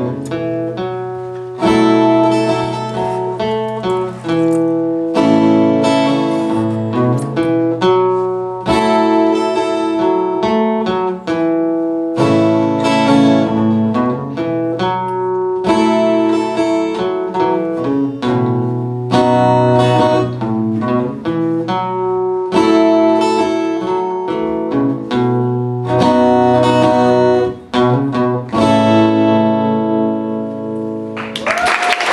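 Acoustic guitar playing strummed chords in a steady rhythm, an instrumental passage with no voice.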